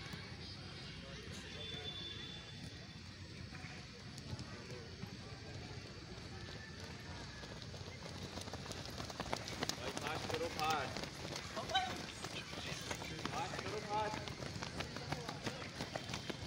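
Footsteps of a large group of runners on a dirt track. They are faint at first and grow louder in the second half as the runners come close, with scattered voices among them.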